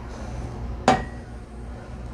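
A single sharp clink about a second in, a metal whisk knocking against the ceramic mixing bowl of egg yolks, with a brief ring after it. A low steady hum runs underneath.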